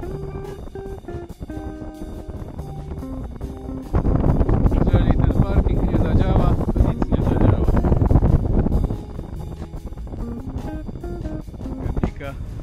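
Background music of plucked, stepped notes. From about four seconds in until about nine seconds, a loud rush of wind on the camera's microphone during the paraglider flight drowns the music, then the music returns.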